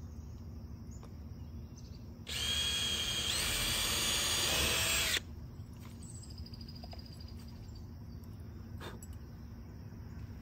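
Cordless drill driving a screw into a plywood coop hatch: one run of about three seconds whose whine steps up in pitch partway, then stops suddenly.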